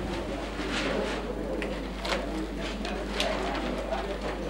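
Pigeons cooing, with several sharp clicks scattered through and a steady low hum underneath.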